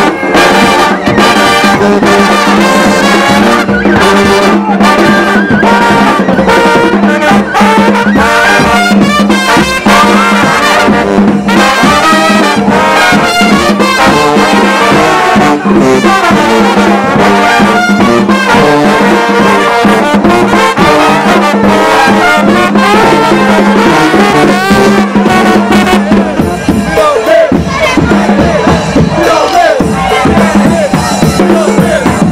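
New Orleans-style brass band playing a second-line tune, the horns loud and full over a steady low bass note. The horns drop back for a few seconds near the end.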